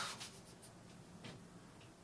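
Quiet room tone with a faint rustle at the start and one faint click a little past a second in.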